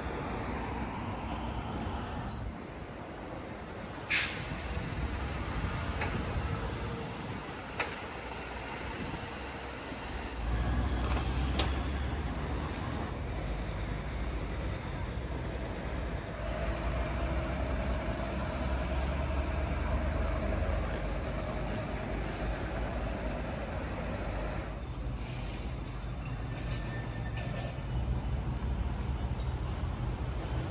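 City street traffic noise with a vehicle's engine rumbling deep and low, starting about ten seconds in and carrying on. A sharp click comes about four seconds in.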